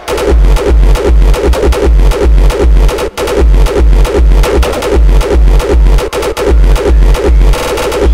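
Hardstyle/rawstyle dance music from a DJ mix: a heavy kick drum beats steadily about two and a half times a second over synth layers, with a brief drop-out a little after three seconds in.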